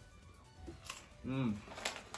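A short hummed "mm" about halfway through, its pitch rising then falling, between two faint crisp clicks from chewing crunchy fried pork-skin snacks (chicharron).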